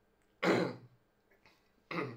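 A man's harsh throat-clearing cough, once, about half a second in, followed by a second, shorter burst near the end.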